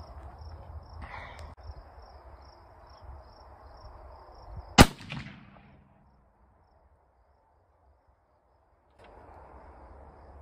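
A single shot from a Thompson/Center Compass bolt-action rifle in .308 Winchester, fired from a bench rest about halfway through, with a short echo after it.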